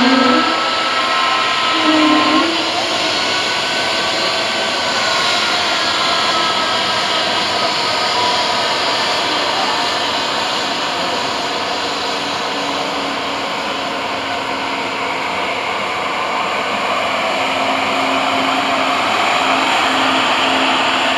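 Pratt & Whitney PW1500G geared turbofan of an Airbus A220 running on the ground: a steady rushing whine, with a few faint tones that waver in pitch in the first few seconds.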